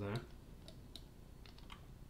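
Faint, scattered clicks of a computer keyboard and mouse, a few short ticks spread across the quiet stretch.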